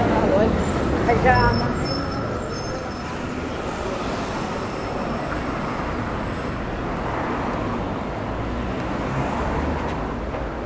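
City street traffic running past, a steady low rumble of cars and a bus, with passersby talking close by in about the first second and a half.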